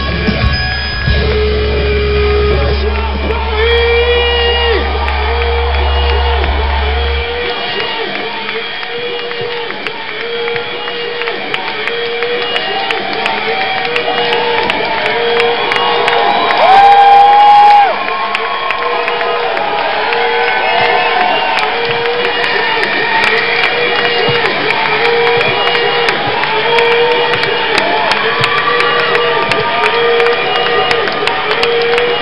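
Live rock concert in a hall: a low held bass note stops about seven seconds in, and a short pitched figure then repeats about once a second while the audience cheers, whoops and shouts. A brief, louder burst comes near the middle.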